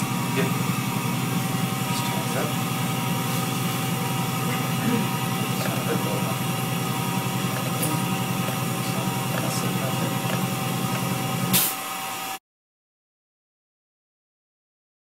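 A steady low hum with a thin held tone and faint muffled voices, cutting off abruptly to dead silence about twelve seconds in.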